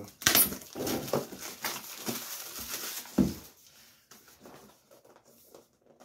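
A cardboard product box is being handled and turned on a tabletop, with scraping and rustling of the cardboard. A sharp knock comes just after the start and another about three seconds in, and the handling is quieter after that.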